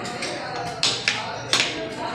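Metal cutlery tapping and scraping against plates, with two sharp strokes close together around the middle, over background chatter.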